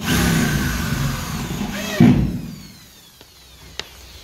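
Yellow corded electric drill running for about two seconds as it drills into a WPC louver panel on a plywood ceiling. There is a louder burst near the end of the run, then the motor winds down with a falling whine.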